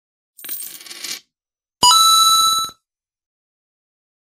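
Channel-intro sound effect: a short burst of hiss, then a sudden bright chime with several ringing tones that lasts under a second.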